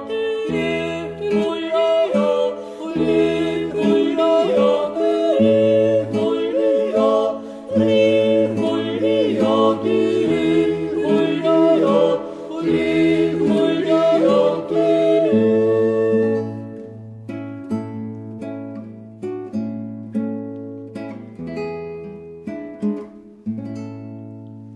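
Alpine folk song: a vocal group sings a wordless, yodel-like passage over acoustic guitar. From about 16 seconds in, the guitar plays on alone with plucked notes over a bass line.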